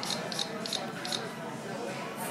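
A run of short, high clicks from a smartphone's speaker as a child taps at the screen, about three a second, slowing and stopping about a second in. Background chatter of voices runs throughout.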